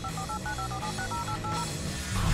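Flip phone keypad beeps as a text message is typed: a quick run of short two-tone key tones, several a second, stopping near the end.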